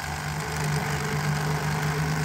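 Electric fillet knife running steadily, its motor humming as the blades cut along a white bass, a little louder from about half a second in.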